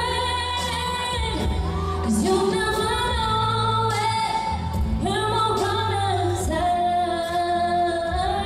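A woman singing a pop song live into a handheld microphone over a backing track, amplified through PA loudspeakers.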